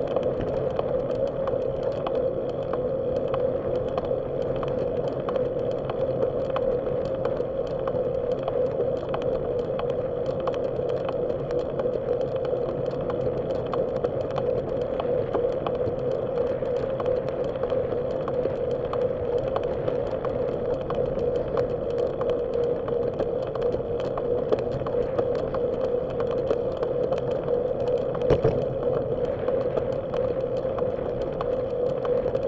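A bicycle rolling along a paved path, heard through a bike-mounted camera: a steady hum over running noise, with frequent small clicks and rattles and a louder knock near the end.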